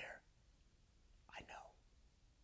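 Near silence, with one short, faint breathy vocal sound from a man about one and a half seconds in.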